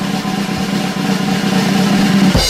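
Snare drum roll, a rapid even roll that grows slightly louder, sounding as a fanfare to build up to the announcement of a name.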